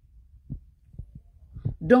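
A pause in a woman's talk, with a few faint low knocks of a phone being handled at the microphone; her voice comes back near the end.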